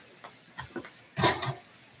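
A person sighing once, a short breathy exhale about a second in, with a few faint small clicks before it.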